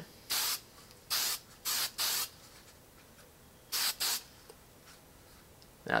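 Aerosol can of hairspray giving short spray passes. There are six brief hisses: four within the first two seconds or so, then two close together about four seconds in.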